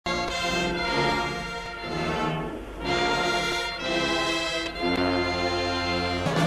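A brass band playing a national anthem in slow, held chords.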